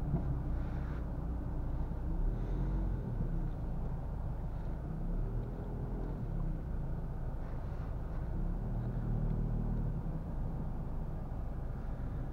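Renault Clio 1.5 dCi four-cylinder turbodiesel heard from inside the cabin while driving slowly: a steady, low engine and road rumble.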